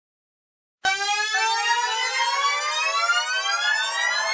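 Silence for almost a second, then a single siren-like tone starts suddenly and climbs slowly and steadily in pitch: the intro of a hip-hop track.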